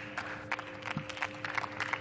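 Scattered applause from a small group, many irregular separate claps rather than a full ovation, over a faint steady hum.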